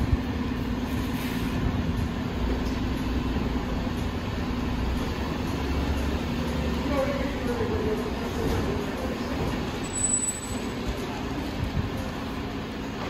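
Volvo rear-loader garbage truck running stationary, its diesel engine and hydraulics giving a steady hum, with a deeper rumble for a few seconds around the middle. A short, thin high whistle comes near the end.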